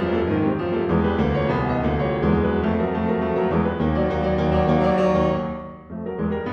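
Steinway grand piano played solo: a dense, fast stream of notes that breaks off for a moment near the end, then resumes.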